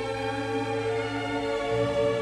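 Slow classical music in long, sustained chords, the harmony shifting about three-quarters of the way through.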